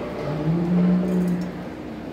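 A man's voice holding one long sung note for about a second and a half, opening a chanted Sanskrit verse.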